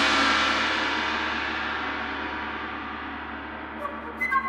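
A large gong ringing on after being struck, loud at first and fading slowly and steadily, with many overlapping metallic tones, as part of a contemporary music piece.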